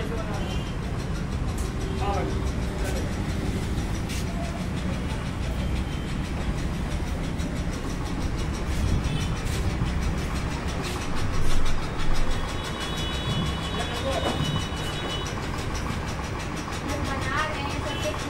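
Steady low rumbling background noise with faint, indistinct voices now and then, swelling briefly louder about eleven and a half seconds in.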